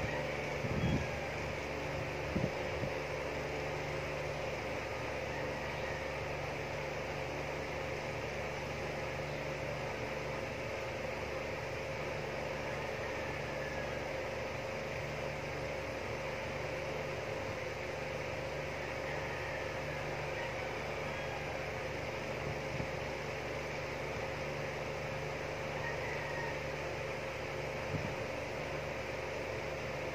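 A running fan's steady hum and hiss, with a few faint taps about a second in, near two and a half seconds and near the end.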